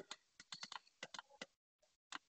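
Faint run of quick, uneven clicks at a computer while a PDF is being navigated, about ten in a second and a half, then stopping.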